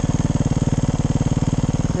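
Dirt bike engine running at a steady speed, an even rapid firing pulse with no revving.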